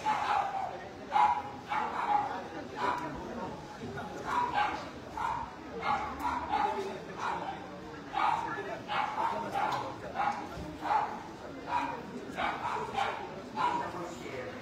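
A dog barking repeatedly, a short bark about every half second to second, with voices in the background.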